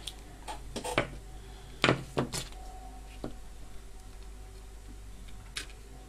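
A handful of sharp clicks and taps from small hand tools on a dome-light fitting's metal frame: flush side cutters snipping a resistor lead and being handled, the loudest snaps about two seconds in.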